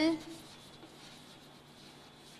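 Chalk writing on a blackboard, faint, just after the end of a spoken word at the very start.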